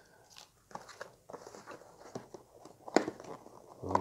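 Cardboard model-kit box being handled and opened: irregular small scrapes, crackles and light taps, with a sharper click about three seconds in.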